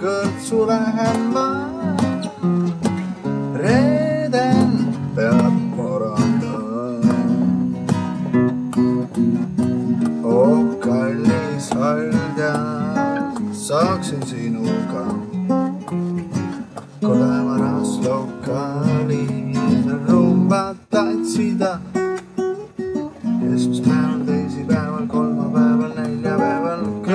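A man singing a song while strumming an acoustic guitar, with steady chords under his voice.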